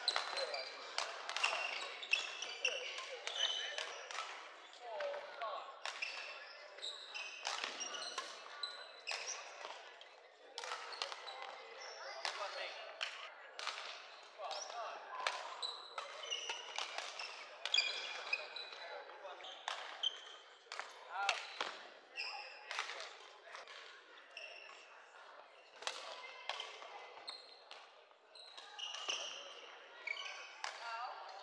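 Badminton play on a wooden hall court: repeated sharp racket hits on the shuttlecock at irregular intervals, with shoes squeaking on the floor, over a background murmur of voices in a large hall.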